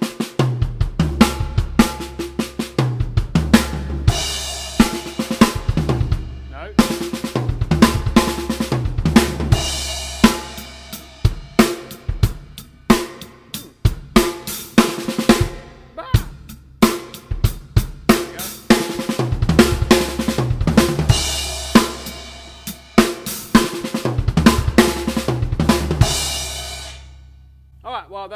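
Acoustic drum kit played at a steady tempo: a kick, snare and hi-hat groove is broken every few seconds by a fill of six-stroke rolls on the snare with double kick-drum strokes, landing on crash cymbal hits. The playing stops about a second before the end, the last cymbal ringing out.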